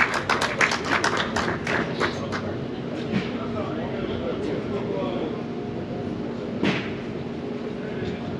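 Scattered handclapping from a small audience at the end of a song, dying away after about two and a half seconds. A single knock follows about seven seconds in.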